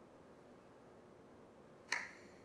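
Quiet room hush, then a single sharp click near the end.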